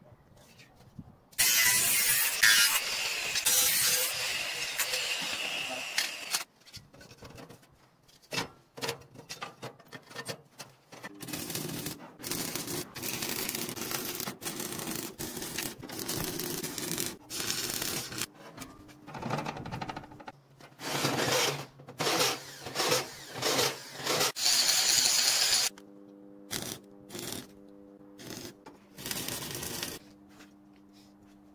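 Stick (arc) welding on steel: the arc crackles in on-and-off bursts, with longer welds and a quick run of short tack welds near the end.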